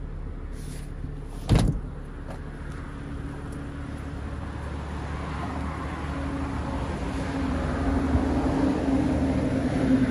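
A BMW M2's engine idling with a steady low hum that grows louder through the second half. There is a single sharp knock about one and a half seconds in.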